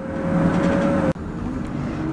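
Running noise of a moving vehicle: a steady low rumble with a faint steady whine. It drops out abruptly about halfway through and carries on a little quieter.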